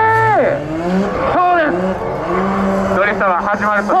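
Drift car cornering on a steady circle: a high, steady tire squeal drops away about half a second in. After that the engine revs rise and fall as the car slides, with more tire noise.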